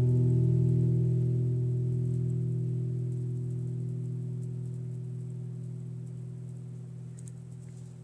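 Final chord of an acoustic guitar accompaniment ringing on and slowly fading away at the end of a song. The higher notes die out within the first second, leaving the low notes to fade gradually.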